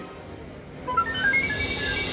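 Willy Wonka video slot machine playing a short electronic jingle: single notes stepping upward in pitch, starting about a second in, over steady background noise.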